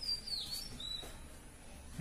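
A bird chirping: a high whistled note that slides down and back up, then a short steady note, all within the first second.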